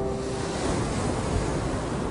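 Ocean surf breaking and washing up a beach: a steady, even rush of waves. A sustained music chord fades out at the very start.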